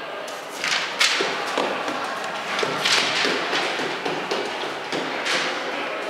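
A string of irregular thumps and knocks, about a dozen over six seconds, each with a short echo, in a stairwell.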